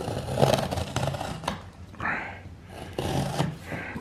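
The blade of a Victorinox Huntsman Swiss Army knife slitting packing tape along the seam of a cardboard box, in irregular scraping strokes.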